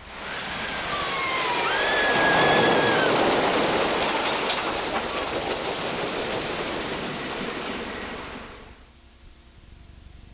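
The Phoenix, a wooden roller coaster, with its train rumbling past on the wooden track, with high squeals over the rumble. It comes in suddenly, is loudest about two and a half seconds in, and fades away over the next six seconds.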